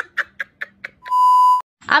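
A man laughing in a quick run of 'ha' bursts, about five a second, fading away. About a second in, a loud, steady censor bleep tone sounds for half a second.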